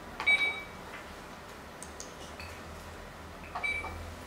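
A Go game clock being pressed twice, each press a sharp click followed by a short high beep, about a third of a second in and again near the end. Fainter clicks of stones come in between.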